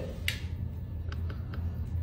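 A dog's toenails being cut with pet nail clippers: a few faint, sharp clicks, over a steady low hum.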